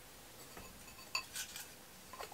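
A few faint clicks and clinks of small objects being picked up and handled on a desk, the clearest two a little past the middle.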